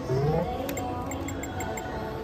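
Electronic gaming-machine music and chimes from a video poker machine on a casino floor: a short rising electronic tone at the start over steady held tones, with a fast, even series of short high beeps.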